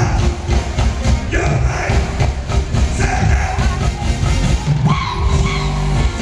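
An R&B band playing live with a strong bass line, and a male lead vocal singing over it at times.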